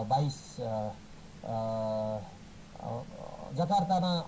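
A man's speech: a news anchor reading in Nepali, with halting phrases and a long held vowel about a second and a half in. A faint steady high whine sits underneath.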